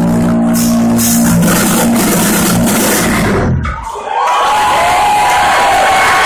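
Live heavy metal band ending a song: a distorted guitar and bass chord rings out and fades over the first two seconds. After a brief lull a few seconds in, the crowd cheers and whistles loudly as the stage goes dark.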